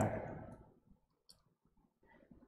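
The tail of a spoken word fading out, then near silence broken by one faint short click a little over a second in.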